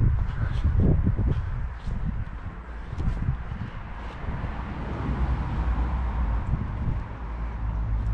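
Wind buffeting the microphone: a steady low rumble that swells and eases a little with the gusts.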